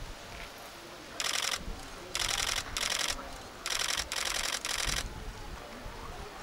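Press photographers' camera shutters firing in rapid continuous bursts: six short bursts of rapid clicks, each under half a second, one after another.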